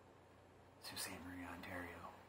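Only speech: a man's voice says a short phrase, starting a little under a second in. Before that there is quiet room tone with a faint steady low hum.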